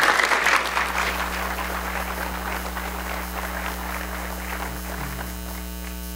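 Audience applauding, loudest at the start and dying away gradually, over a steady mains hum.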